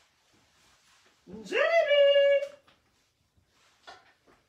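A voice calls a name in one long, drawn-out call. It rises at first and is then held on one pitch for about a second.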